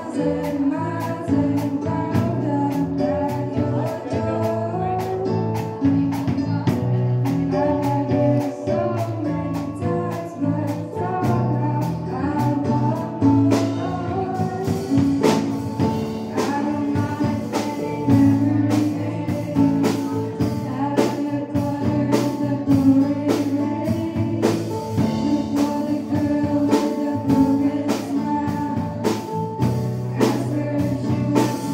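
A live pop song with female vocals sung into microphones, backed by a band on drum kit and electric bass playing a steady beat.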